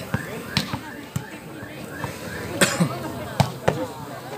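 A volleyball being struck by players' hands and forearms during a rally: a string of sharp slaps, about six in four seconds, the loudest about two and a half seconds in.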